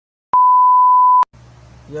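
Test-card beep: one loud, steady, single-pitched tone lasting about a second, switched on and off with a click at each end, played over television colour bars as an editing transition.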